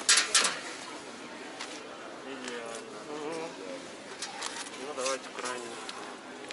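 Luggage being handled on a hard floor: a brief clatter of two or three sharp knocks right at the start, followed by indistinct voices.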